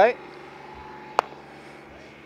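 A single sharp click a little over a second in, over a faint steady hum in the outdoor background.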